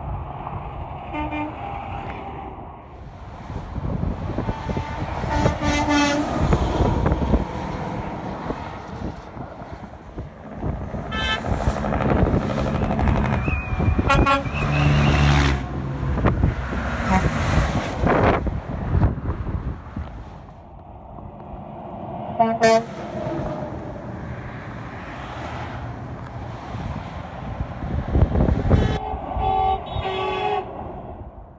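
Semi trucks passing on a highway, their engines and tyres swelling and fading, with several short air-horn blasts from the trucks spread through, one sharp blast a little past two-thirds of the way in.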